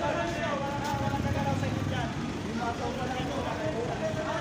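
Several people talking over one another on a street, with a steady low vehicle rumble underneath.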